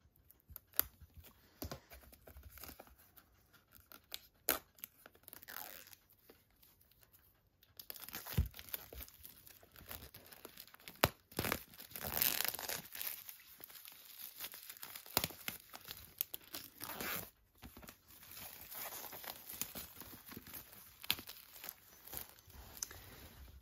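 Plastic shrink-wrap on a Blu-ray box being slit with scissors, a few scattered snips and scrapes, then torn and peeled off with continuous crinkling and crackling from about eight seconds in.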